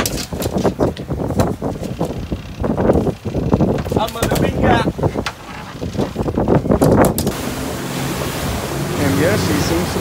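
A barracuda flopping on a fiberglass boat deck, giving irregular knocks and slaps, with some talk. About seven seconds in, this cuts to a Yamaha 250 four-stroke outboard running at speed, with rushing wake and wind on the microphone.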